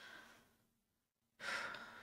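A woman breathing: a faint short breath at the start, then a longer audible sigh from about a second and a half in.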